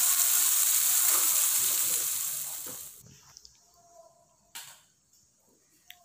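Stir-fried tempe, eggplant and long beans sizzling in a wok, the sizzle fading away about three seconds in. Then near quiet with one short knock.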